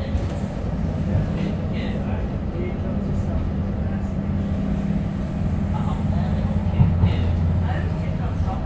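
Tyne and Wear Metrocar heard from inside the passenger saloon while running along the line: a steady low rumble of the wheels on the rails with a constant low hum under it. Faint voices of other passengers show through now and then.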